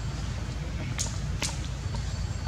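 Two sharp snaps, about half a second apart, over a steady low rumble.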